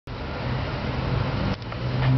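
Steady low hum under a hiss of background noise, with a brief dip about one and a half seconds in.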